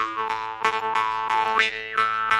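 Jew's harp played solo: a steady buzzing drone struck in quick, regular plucks, the overtone melody sweeping up and down as the mouth shape changes.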